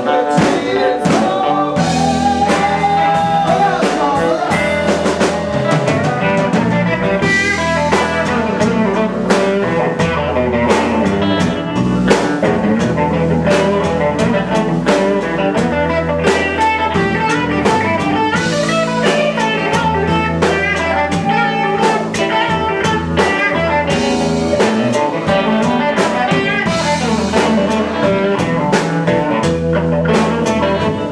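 Live blues band playing: an archtop electric guitar, an electric bass and a drum kit keep a steady beat, with a woman singing.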